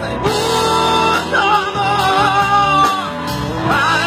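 Live rock band playing, with a male singer over electric guitar and drums.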